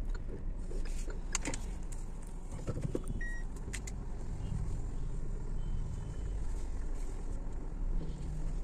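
Car heard from inside the cabin while reversing slowly: a steady low engine and tyre rumble, with a few scattered clicks and one short high tone about three seconds in.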